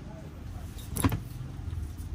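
A single short knock about a second in, from a folded fleece hoodie being handled on a stone shop counter, over a low steady background hum.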